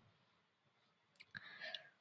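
Near silence, with a faint click a little past the middle and a brief soft sound just after it.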